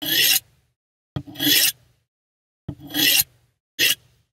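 Steel knife blade drawn edge-first across the unglazed ceramic foot ring of a coffee mug, sharpening the edge: four strokes about a second apart, the last one short, the middle two each opening with a light tick.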